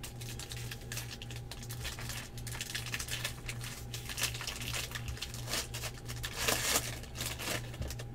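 Foil wrapper of a Bowman Draft jumbo trading-card pack being torn open and crinkling in the hands, with a louder stretch of crinkling about six and a half seconds in.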